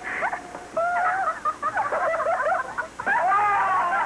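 High-pitched giggling laughter, rising and falling in pitch, growing louder in the last second.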